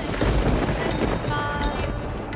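Background score of a TV drama: a deep low hit opens it with a noisy swell, and held high notes come in about halfway through.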